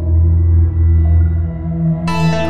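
Deep, sustained ambient drone from the Empty Fields F.3 soundscape library's 'Ant Story No.2' preset playing in the Falcon software instrument: steady low tones that swell and dip softly a few times.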